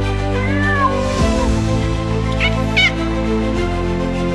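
A kitten mewing over soft background music: a drawn-out meow that falls in pitch about half a second in, then two short high mews near the middle.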